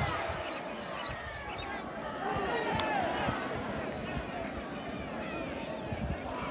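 Open-air football match sound: scattered distant shouts and calls from players and spectators, over a steady outdoor hum and occasional low thuds.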